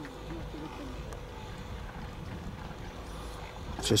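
Steady low rumble of wind on the microphone on a ski slope, with a faint distant voice in the first second.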